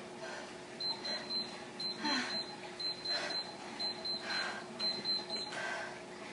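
Gymboss interval timer beeping a rapid run of short, high-pitched beeps, starting about a second in and stopping near the end, marking the end of a work interval. Under it, hard breathing after the exercise, about one breath a second.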